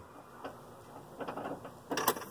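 A few faint clicks from the van as the ignition is worked, then a sharp click right at the end as the starter engages to crank the engine on a weak, failing battery.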